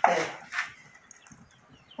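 A dog whimpering faintly, with short high yips, after a brief spoken 'é' at the start.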